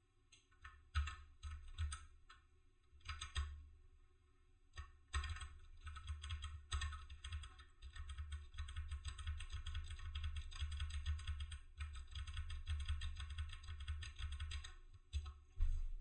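Typing on a computer keyboard: a few short bursts of keystrokes in the first few seconds, then fast, continuous typing from about five seconds in until near the end.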